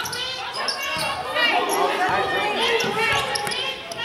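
Basketball game in play on a gym's hardwood court: the ball bouncing and shoes on the floor, with players' voices calling out, all echoing in the hall.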